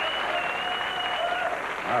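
Studio audience applauding a correctly matched answer.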